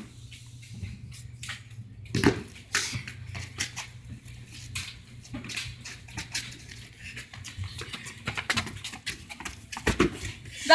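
Scattered light taps and scuffs of sneakers and a soccer ball on concrete, with one louder thump about two seconds in, over a low steady hum.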